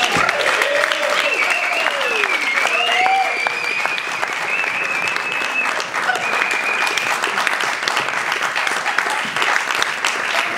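Audience applauding and cheering at the end of a live performance: steady dense clapping, with drawn-out whoops and high whistling over it during the first seven seconds or so.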